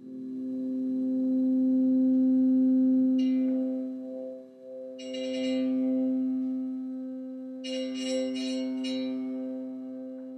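Piano strings driven by an E-Bow, giving one sustained, swelling tone with steady overtones instead of a struck note's decay. The tone starts abruptly, dips about halfway through and swells back. A brief high buzz rides over it three times.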